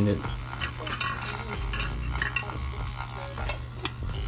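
Secura electric milk frother running with hot water inside for a rinse, its magnetic whisk spinning the water in the stainless steel jug: a steady low motor hum with water swishing and scattered light clicks.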